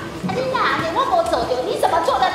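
A woman speaking in a loud, raised, high-pitched voice.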